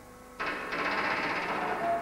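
Pneumatic rivet gun hammering rapidly against aircraft skin, starting about half a second in and running steadily. A steady musical tone comes in near the end.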